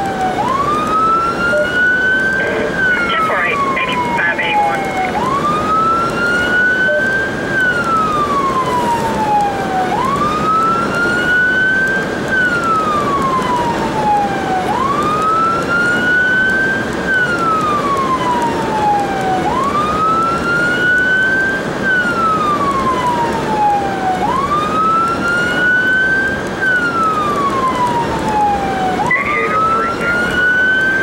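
Emergency vehicle siren on a wail, heard from inside the responding vehicle: a rise and slower fall in pitch repeating about every five seconds, over steady road noise.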